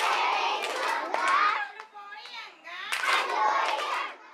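A group of young children talking and calling out excitedly, with sharp hand claps as they clap palms with one another in a hand-clapping game.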